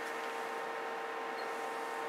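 Steady electrical hum of powered-up bench test equipment, a few constant tones over a low hiss.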